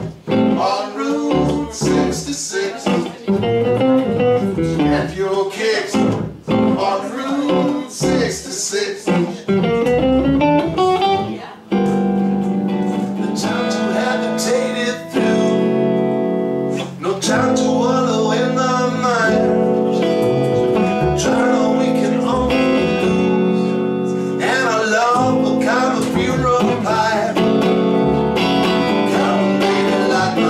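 Live blues-jazz instrumental break on electric guitar and plucked upright double bass. The guitar plays quick single-note lines for about the first twelve seconds, then switches to held chords over the bass.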